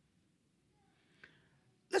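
Near silence for most of the pause, with one short, faint breath-like sound about a second in. A man's voice starts speaking just before the end.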